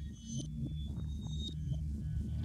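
Cinematic intro sound design: a low pulsing drone with short, high shimmering tones flickering over it, building slightly in level.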